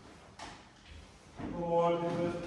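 Faint shuffling with a single knock as people rise, then about one and a half seconds in a man's voice begins chanting on a held note.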